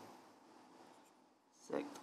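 Faint pen writing on paper, followed near the end by a man saying a single word.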